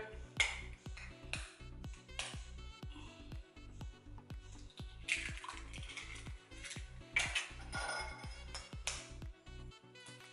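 Background music with a steady bass runs under several short sharp clicks as eggs are cracked on the rim of a small plastic container, their shells breaking.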